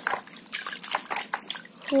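Water sloshing and splashing in a plastic basin as a gloved hand swishes a muddy toy plane through it to wash it, in irregular splashes.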